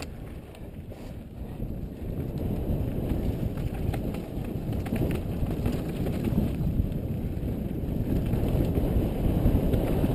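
Wind buffeting a helmet-mounted camera's microphone over the rumble of mountain bike tyres rolling down a dirt trail, growing louder through the second half as the bike picks up speed.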